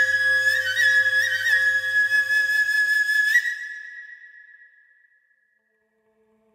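Bamboo flute playing a high held note with a few quick grace-note ornaments, over a faint low drone. The drone stops about three seconds in, and the flute note fades out a second or two later.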